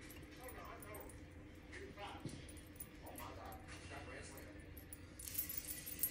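Faint, indistinct voices in the background over a steady low hum, with a brief rustling clatter near the end.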